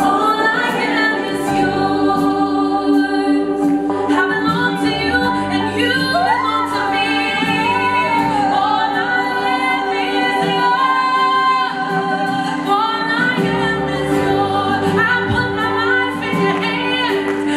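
A woman singing a gospel worship song live with a band, her voice gliding and holding long notes over steady instrumental backing.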